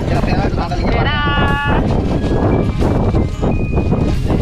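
Steady rumble of wind on the microphone and water around a small boat, with a person's short, wavering, bleat-like vocal sound about a second in.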